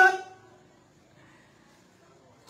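The end of a man's drawn-out spoken word, which fades within the first half second. A pause of near silence follows, with only faint room tone.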